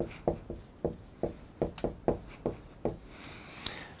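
Dry-erase marker writing on a whiteboard: a run of short, irregular strokes as the letters go down, with a longer rubbing stroke near the end.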